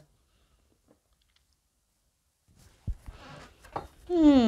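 After a near-silent pause, a deck of tarot cards being handled and shuffled in the hands, with soft papery rustling and a light tap in the last second and a half.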